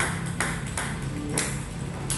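Table tennis ball clicking sharply off the bat and the table during serve practice, about five hits in quick succession, the loudest near the end.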